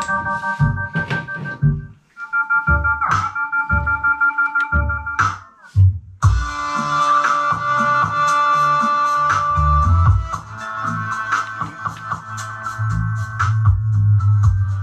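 Electronic keyboard music played loud through a car stereo head unit, a bridged amplifier and a boxed subwoofer, with a pulsing bass line. The sound drops out briefly about two seconds in and again just before six seconds: the amplifier cutting out as the volume is turned up. The owner puts this down to the power supply putting out more than 13 volts.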